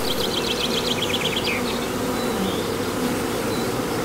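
Honeybees buzzing in a steady drone, with a quick run of high chirps over the first second and a half.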